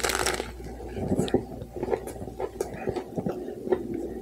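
A big bite into a sandwich layered with potato chips, a sharp crunch right at the start, followed by close-up chewing with scattered small crunches and wet mouth clicks.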